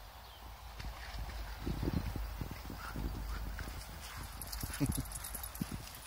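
A springer spaniel coming back with its ball makes a quick, irregular run of soft rhythmic sounds from about a second and a half in until near the end, over a low wind rumble on the microphone.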